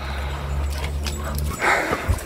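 A dog giving a short vocal sound near the end, over a steady low rumble that stops just before it.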